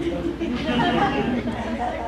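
Several voices talking at once: audience members answering a question put to the room, overlapping one another.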